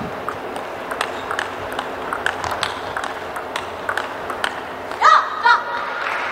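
Table tennis rally: the ball clicks sharply and irregularly off the bats and table over steady arena noise. About five seconds in the rally stops and a short, high-pitched shout is heard.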